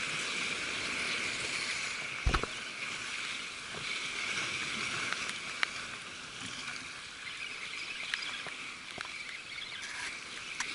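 Steady wash of choppy sea water, with a few light clicks and one knock a little after two seconds in from a hand handling gear close to the camera.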